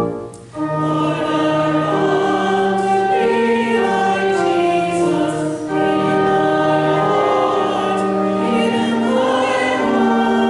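Church choir singing, coming in about half a second in after a sustained organ chord breaks off.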